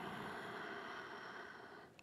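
A long, soft human breath, fading away gradually until it stops just before the next words.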